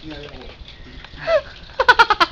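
Several people talking in a room, low and overlapping, with one voice calling out briefly and then a quick burst of laughter starting near the end.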